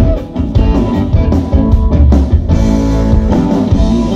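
Live blues-rock band playing: electric guitar out in front over bass guitar and drums.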